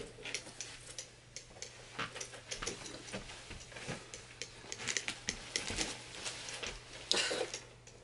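Handling noises as someone gets ready to go out: scattered light clicks, taps and clothing rustles from putting on shoes and a jacket and picking up a canvas tote bag and purse, with a louder rustle near the end.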